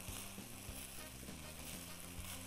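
Rice toasting in butter and oil in a pot, sizzling faintly as it is stirred with a spatula.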